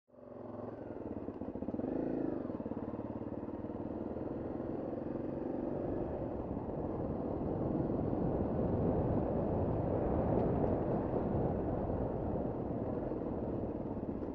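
Trail motorcycle engine running while riding a rough stone track, its pitch rising and falling about two seconds in. After a few seconds the sound becomes rougher and louder.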